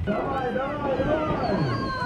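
Off-road SUV's engine revving hard under load as it ploughs through deep snow, its pitch swinging up and down.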